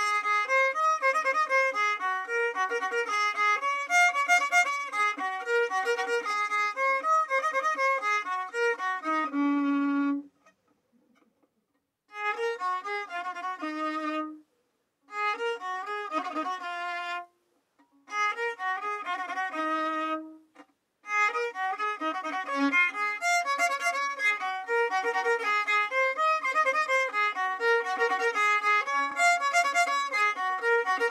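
Solo violin playing a son huasteco melody. About ten seconds in it stops for roughly two seconds, comes back in three short phrases with brief silences between them, then plays on steadily.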